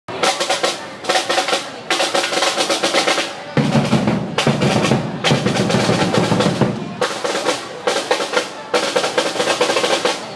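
Street-dance drum ensemble playing a fast, dense beat: snare drums rolling over bass drums. The bass drums come in heavier about three and a half seconds in.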